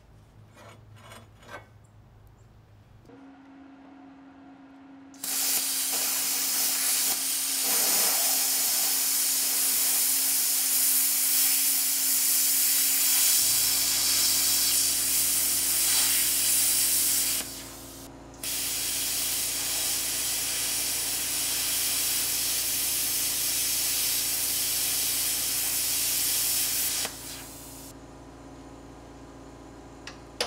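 Plasma cutter cutting steel: a loud, steady hiss that runs about twelve seconds, stops for a second, then runs about eight seconds more, over a steady machine hum.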